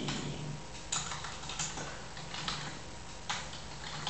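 A few scattered keystrokes on a laptop keyboard: about five separate clicks with uneven pauses between them.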